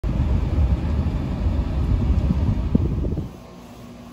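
Low rumble of a car heard from inside its cabin, with a few knocks, cutting off abruptly about three seconds in. A faint steady tone follows.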